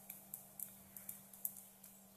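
Faint, irregular light taps of a stylus on a drawing tablet, about half a dozen, over a low steady hum.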